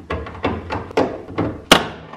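Plastic knocks and clicks as a Chevrolet Colorado's tail light housing is worked loose from the truck's body by hand. About six or seven irregular knocks, with one sharp, loud knock near the end as the housing comes free.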